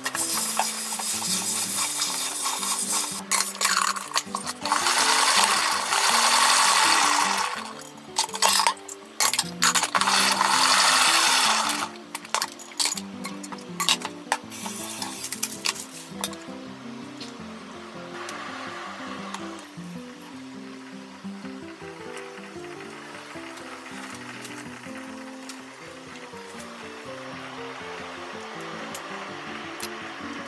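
A salad spinner spinning washed mizuna greens, whirring in several bursts over about the first twelve seconds, the longest two running several seconds each. Background music plays throughout.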